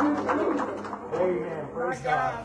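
Indistinct voices speaking, with no clear words.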